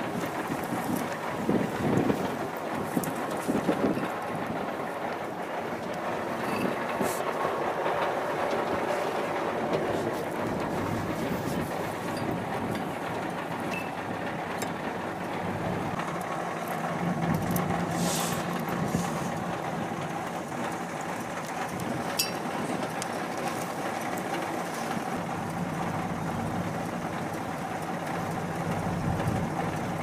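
A steady engine-like drone with a few faint clicks and knocks over it.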